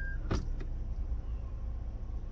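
Low, steady hum inside a Toyota Veloz's cabin with the car switched on and in reverse. A short electronic beep from the car ends just as it begins, and a single sharp click follows about a third of a second in, then a fainter one.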